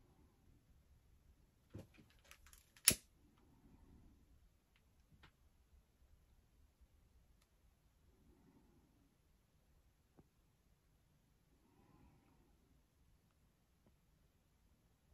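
A mostly quiet room with a few sharp clicks two to three seconds in, the loudest just before three seconds, from a long-neck butane lighter being clicked on. Faint soft handling sounds follow.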